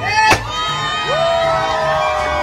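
A party popper goes off with a single sharp pop, then a group of children shout and cheer, one voice holding a long cheer.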